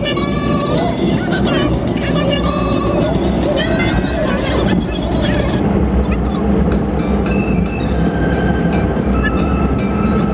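A pop song with a singing voice plays over the steady low rumble of a car driving on the open road.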